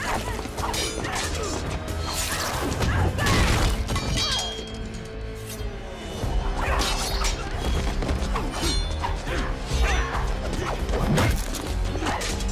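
Action-film fight soundtrack: a music score under a run of hits and crashes, with breaking glass.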